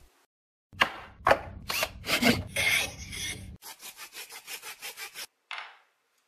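Irregular rubbing and scraping strokes of hand work, then a run of quicker, even strokes about five a second, and one short scrape near the end.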